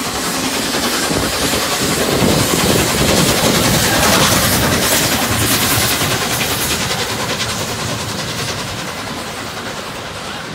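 Steam locomotive passing with its train of coaches: a loud rush of exhaust and rolling wheels that builds to its loudest about four seconds in, then slowly fades as the coaches roll by.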